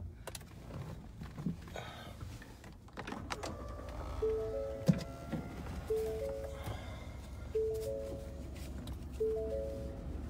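A car's electronic warning chime: three short notes rising in pitch, repeated four times at even intervals of about a second and a half, starting about four seconds in. A few clicks and knocks come before it.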